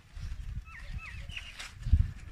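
Grapevine leaves rustling and low handling thumps as bunches of grapes are picked by hand, loudest near the end. An animal gives three short falling chirps around the middle.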